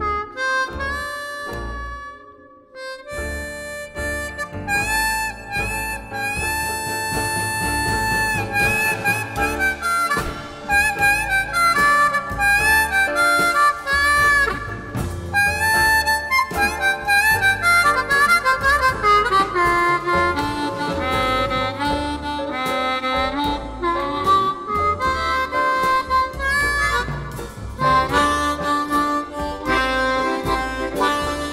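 Harmonica playing a blues melody, with notes bent so that they slide in pitch. There is a brief break about two seconds in, and then the playing runs on without pause.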